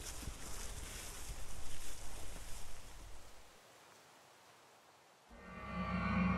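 Outdoor ambience of wind and rustling that fades away about three seconds in. Near the end a sustained, eerie music chord with a low drone swells in.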